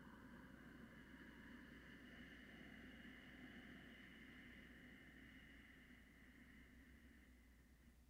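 Faint, slow Ujjayi inhale: a soft steady hiss of breath drawn through a narrowed throat, tapering off near the end.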